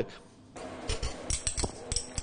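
A metal spoon knocking and scraping in a stainless steel mixing bowl of soft cheese: a few light clinks in the second half.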